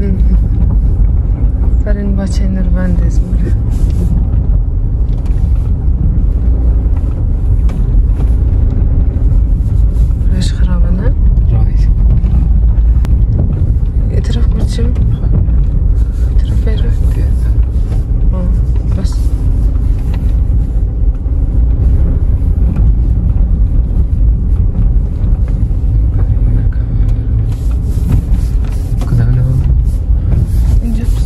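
Steady low rumble of a Toyota car driving, heard from inside the cabin: engine and road noise.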